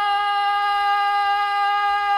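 A single singer's voice holding one long note of a sholawat chant at a steady pitch, unaccompanied by drums.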